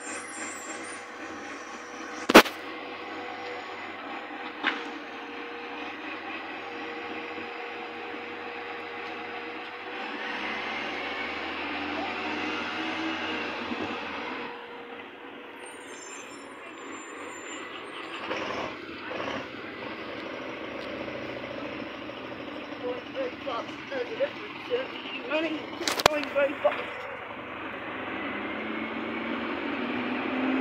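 Garbage truck engine running at a distance with a steady hum, rising in pitch briefly about ten seconds in. Two sharp clicks, one a couple of seconds in and one near the end.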